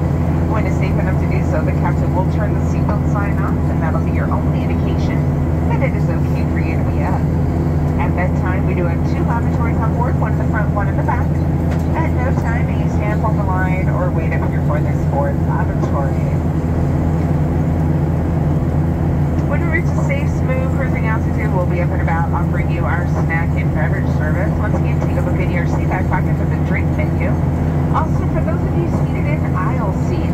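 Steady cabin drone of a Boeing 737-700 in climb: its CFM56-7B turbofans and airflow heard from a forward window seat, a constant low hum. Indistinct passenger voices come and go over it.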